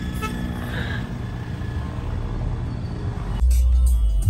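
Engine and road rumble of a car in slow city traffic, heard from inside the cabin, with a short vehicle horn toot just after the start. About three and a half seconds in, loud music with a heavy bass beat suddenly cuts in.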